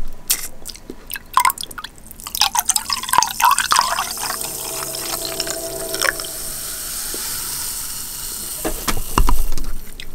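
A red, bubbly drink poured from above into a glass: gurgling and splashing at first, then a steady pour with a fizzing hiss as the glass fills. A loud thump near the end.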